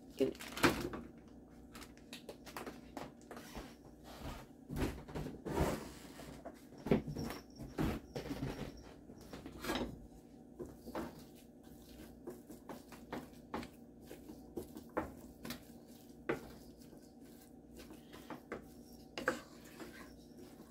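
Scattered knocks, clicks and scrapes of cooking: ground beef pushed out of its plastic tube into a nonstick skillet, then a wooden spoon knocking and scraping against the pan as the meat is broken up.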